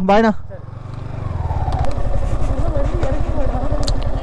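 Yamaha R15 V4's single-cylinder engine pulling away, the revs and loudness climbing about a second in, then running steadily under throttle.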